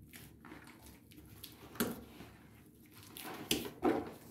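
Hands kneading soft bazlama bread dough in a plastic bowl: faint squishing and pressing, with a couple of short louder pushes about two seconds in and near the end.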